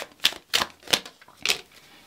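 Tarot cards being drawn off a deck and laid down on a wooden table: several short, sharp card snaps and taps.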